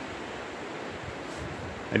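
A river rushing steadily, an even wash of water noise.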